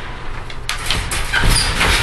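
Metal wire dog crate rattling and clanking as a Great Dane pushes and mouths at its door and latch.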